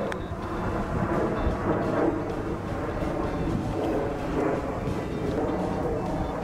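Wind rumbling against the microphone: a steady, low, noisy rumble with no distinct events standing out.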